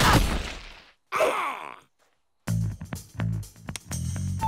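Cartoon sound effects: a noisy rush that fades out over about a second, then a short effect falling in pitch. About halfway through, background music with a low pulsing beat comes in.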